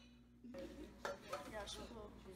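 Faint background voices starting about half a second in, with a light click about a second in.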